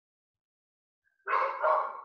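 A dog barking, a short burst of about a second that starts past the middle and fades out.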